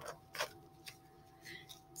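Faint handling of a picture book: a few light clicks and a soft rustle as the paper pages are moved and turned.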